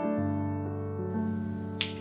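Background piano music with slow sustained chords. A single short, sharp click sounds near the end.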